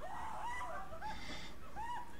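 Birds calling: many short calls, each rising and falling in pitch, overlapping one another.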